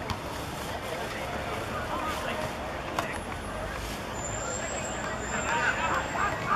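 Football players' voices calling out across an open pitch during play, getting louder near the end, with one sharp knock about three seconds in and a faint thin high tone from about four seconds on.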